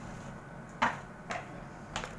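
Light knocks and clicks as a crochet bag piece is handled and turned over on a wooden table: a sharp knock a little under a second in, a softer one about half a second later, and another near the end.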